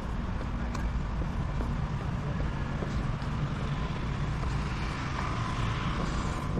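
Steady outdoor parking-lot ambience: a low rumble of distant road traffic, with a faint hiss that grows slightly near the end.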